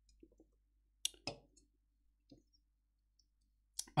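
A handful of faint, scattered clicks from a computer mouse or keyboard as the chat is being worked.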